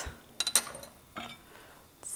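A few light clinks and knocks of kitchen utensils against a frying pan, about half a second in, followed by a softer scrape just after a second.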